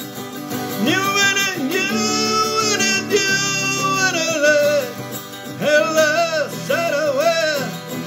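A man singing with his own strummed guitar accompaniment. The voice comes in about a second in with a long held note, breaks off briefly around the middle, and returns with shorter phrases near the end.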